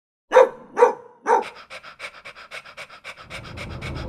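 A dog barks three times in quick succession, then pants rapidly, about six breaths a second. A low road rumble comes in near the end.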